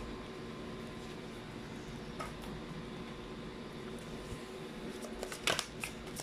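Faint soft rustle of a tarot deck being shuffled by hand, with a few light clicks of the cards near the end.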